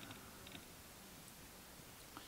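Near silence: room tone, with two faint small clicks about half a second apart from a diecast model car being handled in the fingers.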